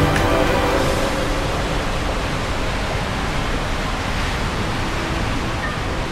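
Steady rushing water noise with no distinct events. Music fades out in the first second.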